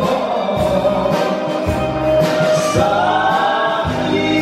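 Live band music with singing, from a small group of plucked strings and keyboard, with a bouzouki among the instruments. A held sung line comes in about two and a half seconds in.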